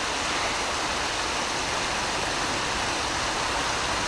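Steady rush of river water flowing over stones, even throughout with no distinct splashes.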